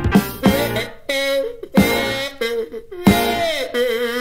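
Skiffle band music: a drum beat with strummed chords, then from about a second in the band thins to a few hits under long, buzzy sustained notes that bend down near the end, most likely a kazoo break.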